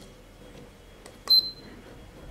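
SUGON T26D soldering station giving one short, high beep about a second in, as its CH1 preset button is pressed to select the first channel temperature (300 °C).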